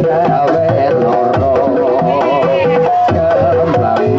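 Live Javanese gamelan accompanying an ebeg dance: hand-drum (kendang) strokes in a steady rhythm under a melody of ringing metallophone notes.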